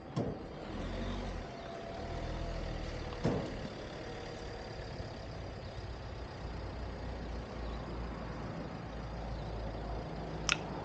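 A vehicle engine running with a steady low rumble, with a sharp click just after the start and another about three seconds in.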